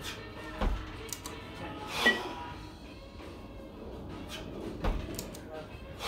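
Two 20 kg competition kettlebells being jerked for reps: a dull thud twice, about a second in and near the end, as the bells come back down into the rack, and a sharp metallic clink with a short ring about two seconds in, over background music.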